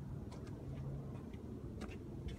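Faint steady low hum with a handful of light, sharp clicks scattered through it.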